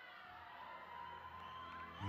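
Quiet room ambience: a faint steady hum with a faint held tone.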